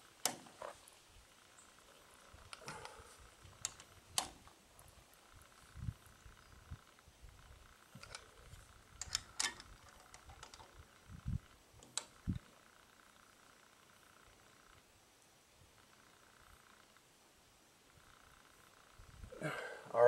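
Torque wrench ratcheting on the nut of a stainless steel wedge bolt: scattered sharp clicks and a few low knocks, irregularly spaced over the first twelve seconds, then little but a faint steady tone.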